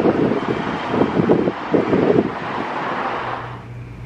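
Wind buffeting the microphone in uneven gusts, dying away near the end.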